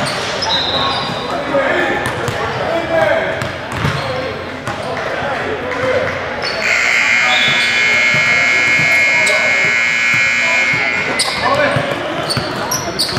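Basketballs bouncing on a hardwood gym floor with players' voices in a large hall. A little over halfway through, a gym scoreboard buzzer sounds steadily for about four and a half seconds, then cuts off.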